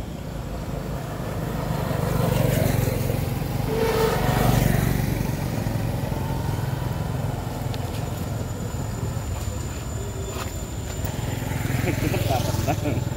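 A motor vehicle's engine passing on the road, a low rumble that swells a couple of seconds in and then fades.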